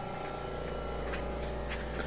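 Room tone in a pause between sentences: a steady low hum with a few faint clicks.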